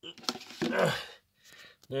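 A man's voice: a few quick, indistinct words in the first second, then he starts talking again just before the end.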